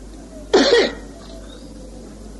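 A man's single brief cough about half a second in, followed by faint room hiss.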